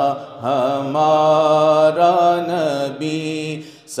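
A man's unaccompanied voice chanting a naat in long, melodic held notes that waver and bend in pitch. There is a short break near the start and a breath just before the end.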